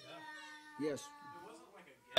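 A soft spoken "yes" from a listener about a second in, over a faint, steady, long-held hum in a quiet room.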